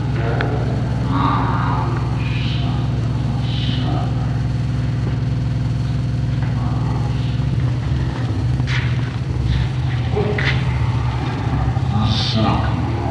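A steady low rumble or hum, with faint voices of people talking in the background.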